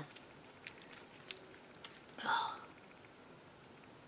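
Faint clicks and taps of a roll of washi tape being turned in the fingers, with a brief whispered breath about two seconds in.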